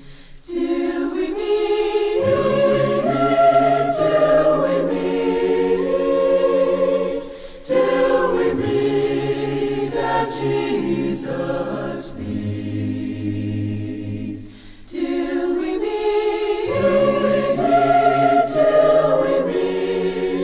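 An unaccompanied choir sings a hymn in several-part harmony, in long phrases broken by two short pauses for breath.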